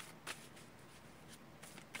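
Faint shuffling of a deck of Osho Zen Tarot cards by hand, a soft rustle with a few light ticks of the cards.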